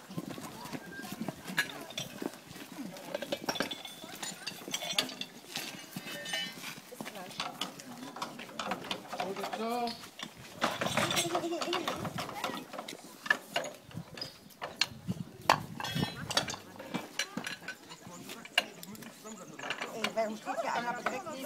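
Irregular metallic clicks and clanks of hose couplings and fittings being handled and connected at a portable fire pump, with voices calling throughout.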